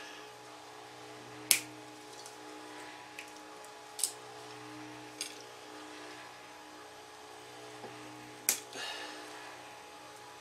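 Small side cutters snipping nylon cable ties: a few sharp clicks spaced a couple of seconds apart, the loudest about a second and a half in and another near the end.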